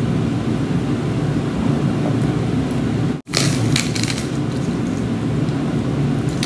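Close-up chewing and mouth sounds over a steady low rumble. The sound cuts out for an instant a little past halfway, then a few short crackles follow.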